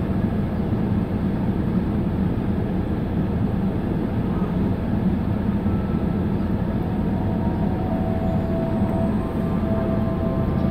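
Steady low rumble of a car idling, heard from inside its cabin. Faint thin steady tones join in about seven seconds in.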